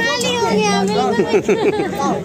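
Several voices talking over one another, children's voices among them: crowd chatter around a game stall.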